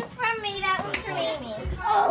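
Indistinct voices talking over each other, one of them a child's, with a brief click about a second in.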